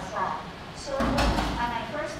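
A woman's voice speaking, with a low bump about a second in.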